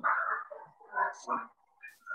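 A dog barking a few short times in the background of a video call.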